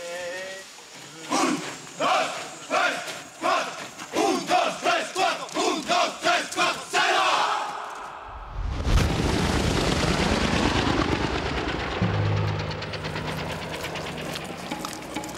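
A group of soldiers shouting a running cadence in unison, one shout after another, coming quicker toward the end. About eight seconds in it gives way to the steady chopping noise of a helicopter's rotor and engine.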